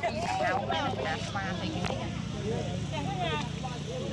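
Several people talking at once over a low, steady engine hum.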